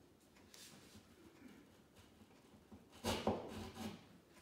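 Small screwdriver pushed and twisted into drywall through painter's tape to punch a pilot hole for a plastic anchor. There is faint rubbing at first, then a gritty scraping that lasts about a second, starting about three seconds in.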